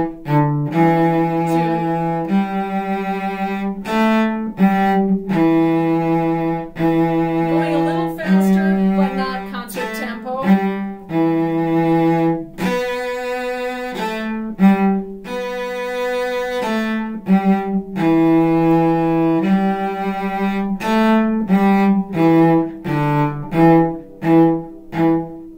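Solo cello, bowed, playing a passage from a string-orchestra piece: short separate notes at the start and again near the end, with longer held notes in between.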